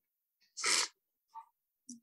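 A person's single short, sharp expulsion of breath, a little over half a second in.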